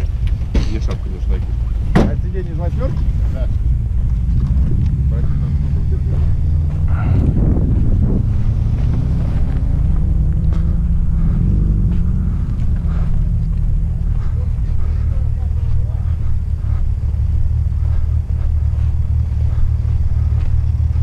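Car engine running steadily, a continuous low rumble.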